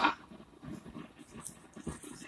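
Faint room noise with a few soft clicks near the end.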